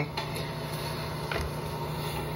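A steady low hum over room noise, with one faint click about a second and a half in.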